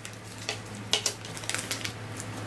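Snack bag of puffed corn crinkling and rustling as it is handled and a hand reaches into it, with a few sharp crackles, the clearest about half a second and a second in.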